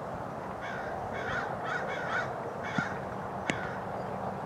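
A bird giving five short calls about half a second apart, followed by a single sharp knock about three and a half seconds in.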